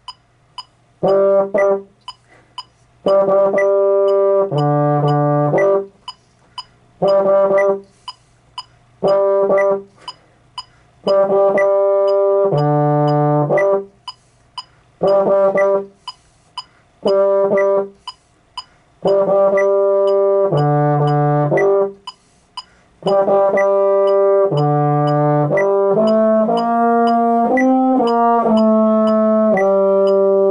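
Baritone horn playing a band part: short phrases of repeated notes, mostly on one pitch, separated by rests. Near the end it moves into a longer unbroken line with changing notes.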